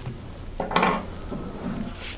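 A brief light clink of small metal fly-tying tools being handled, about a second in.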